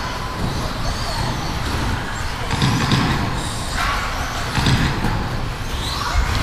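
1/10-scale electric RC off-road buggies running on an indoor carpet track, heard in a large, echoing gymnasium, with indistinct voices in the background.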